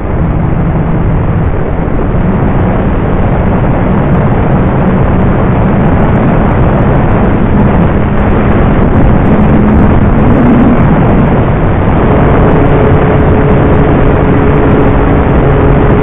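Electric motor and propeller of a Dynam T-28 Trojan RC model plane in flight, heard from an onboard camera under heavy wind rush. The propeller hum rises in pitch about ten seconds in and stays higher near the end.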